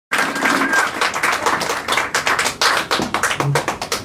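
A small audience clapping, with the single claps distinct, easing off near the end.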